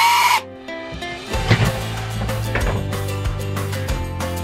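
A Ryobi cordless drill whirring briefly at the very start, a short spin with a slightly rising pitch. Then background music with a steady beat for the rest.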